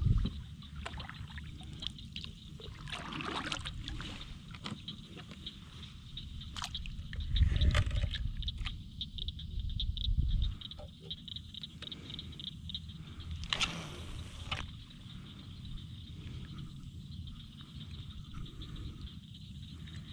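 Kayak being paddled on still water: paddle strokes dipping and sloshing, with scattered light knocks and drips, a low rumble from about seven to ten seconds in, and a brief louder swish about fourteen seconds in.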